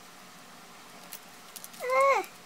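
A pet cat meows once near the end, a short call that rises and then falls in pitch.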